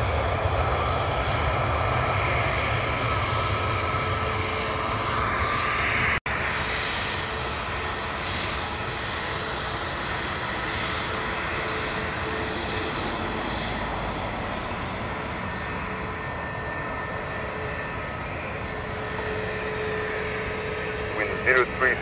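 Jet airliner engines: for about the first six seconds the loud rumble of an Airbus on its landing roll with spoilers raised. After a sudden cut, an Airbus A320neo's engines run steadily at low power as it taxis, a whine with a few held tones. Radio speech comes in near the end.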